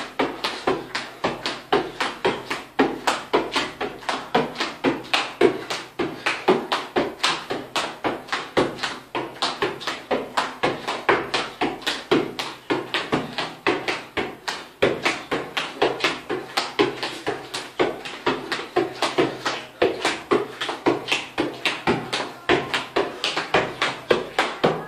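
A football being juggled: a long unbroken run of sharp taps of foot on ball, about four a second.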